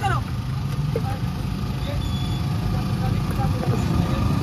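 Steady low engine rumble of roadside traffic, with faint voices in the background.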